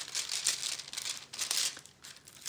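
Clear plastic film on a diamond-painting canvas crinkling in irregular rustles as hands unfold and smooth the stiff, folded canvas, dying away near the end.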